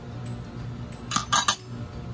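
Kitchenware clinking: three quick sharp clinks just past a second in, as a bowl or utensil knocks against the aluminium pot, over a steady low hum.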